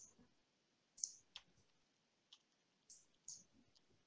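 Near silence: room tone with about five faint, short clicks spread over the four seconds.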